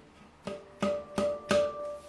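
Handpan struck with one hand, about four quick strokes, one note ringing on steadily with its octave overtone above it: a one-handed harmonic.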